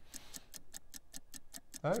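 Clock-style ticking sound effect marking a sales countdown timer: rapid, even ticks, several a second.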